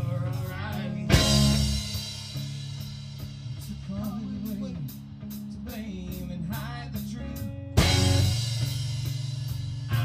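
Live rock band playing an instrumental passage: electric bass and electric guitar over a drum kit keeping time on the hi-hat, with a loud cymbal crash about a second in and another near the end.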